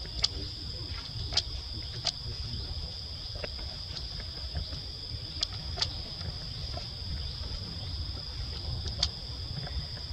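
Steady high-pitched drone of an insect chorus, over a low rumble, with a few brief sharp clicks scattered through it.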